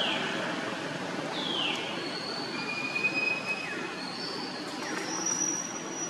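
A series of thin, high-pitched whistling calls over a steady background hiss: several short calls that slide downward in pitch, and a few longer calls held on one high note near the middle and end.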